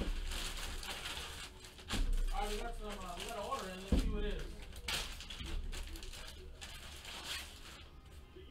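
A plastic bag crinkling and rustling as it is handled and opened, with a sharp knock on the table about four seconds in.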